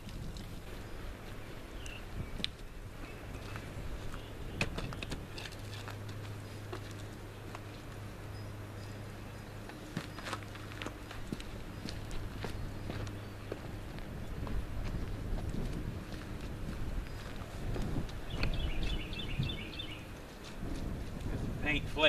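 Wind rumbling on a windscreened microphone, with footsteps on gravel and scattered knocks and clunks as a wooden step stool is carried over and set down beside the truck.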